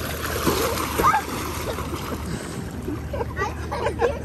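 Water splashing as a child kicks and paddles through a swimming pool, strongest in the first second and a half, with short voice sounds over it.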